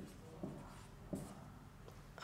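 Whiteboard marker writing on a whiteboard: a few faint, short strokes.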